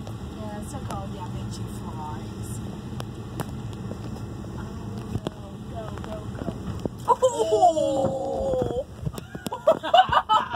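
Van engine idling with a low steady rumble, under faint voices and a few light clicks. About seven seconds in, a loud, drawn-out, wavering vocal sound rises over it for a second or two.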